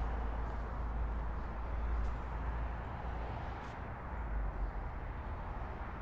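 Steady low rumble and hiss of outdoor street traffic, with no distinct engine or motor tone standing out.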